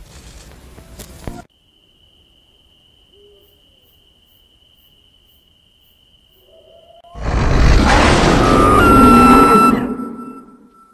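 Video-static hiss that cuts off about a second and a half in, then a faint steady high tone. About seven seconds in, a loud harsh burst of noise starts and lasts about three seconds.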